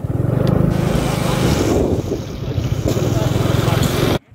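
Motorcycle engine running close by, with a steady rapid throb.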